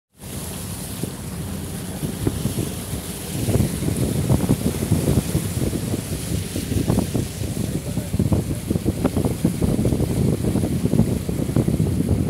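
Floodwater rushing and splashing along the side of a vehicle as it ploughs through a flooded street, with wind on the microphone; it grows louder about three seconds in.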